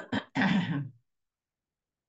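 A person clearing their throat: two short catches and then a longer rasp, all within the first second.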